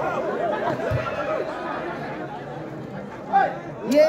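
Crowd of spectators chattering and calling out over one another at a volleyball match, with one louder shout and a sharp knock near the end.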